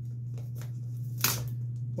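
Hands handling a cardboard product box: a few light rubs, then one louder, brief scrape about a second and a quarter in, over a steady low hum.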